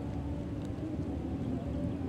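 Steady low outdoor background rumble with a faint steady hum, and no distinct event.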